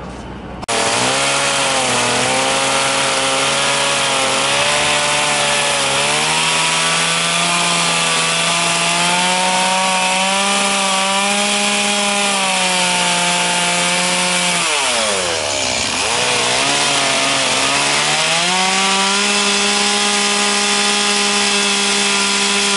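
Stihl two-stroke chainsaw running at high revs as it carves into wood, its pitch wavering with the load. About fifteen seconds in the pitch falls sharply as the throttle drops off, then climbs back to a steady high note.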